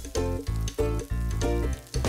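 Background music with a steady beat, over mushrooms and fish frying in oil in a skillet.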